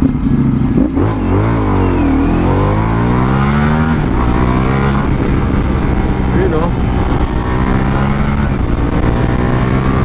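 Ducati Multistrada V4 Pikes Peak's V4 engine accelerating away from a stop, revs climbing and dropping back as it shifts up, about two and four seconds in, then pulling steadily with a slow rise in pitch.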